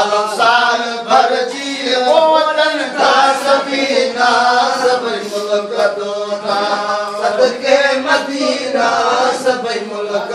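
Voices singing a devotional Sufi chant, a repeated refrain in a chanting melody, over a steady low drone.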